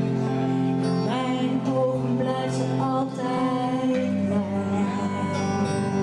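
Live band music: a woman singing into a microphone over electric guitar and bass guitar, the bass moving to a new note about four seconds in.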